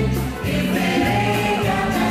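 Quickstep dance music with a singing voice.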